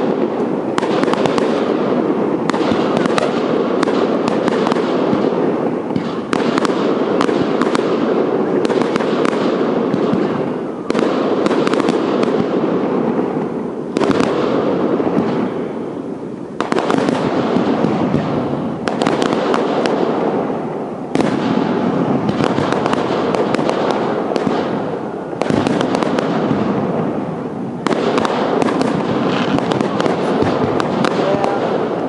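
Aerial fireworks display: a dense, continuous barrage of shell bursts and crackling. Fresh loud volleys come every two to five seconds, each fading before the next.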